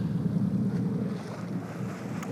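Steady low rumble of wind on the microphone on the open deck of a sportfishing boat at sea.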